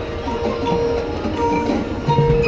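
Marching band music in a softer passage: held notes sustained under short, scattered mallet-percussion tones from the front ensemble.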